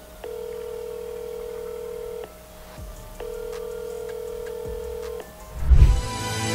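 Telephone ringback tone of an outgoing call: two long steady tones of about two seconds each, a second apart. Just before the end, a deep swelling boom leads into music.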